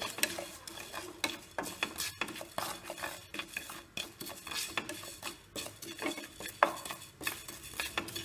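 Wooden spatula stirring fennel seeds as they roast in a nonstick pan. It makes an irregular run of scrapes and seed rattles, with one sharper knock late on.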